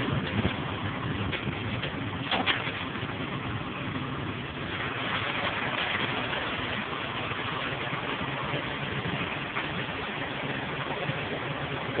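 Ship's machinery running with a steady drone, with a couple of faint clicks in the first few seconds.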